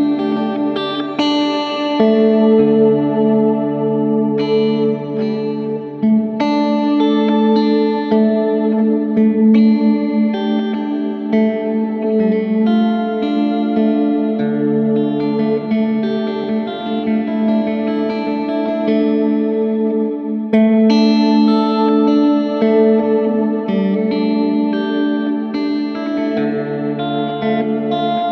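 Electric guitar playing slow, sustained chords through a Catalinbread Cloak room-style reverb and shimmer pedal. The chords change every few seconds and blend into long reverb trails with a bright wash of overtones.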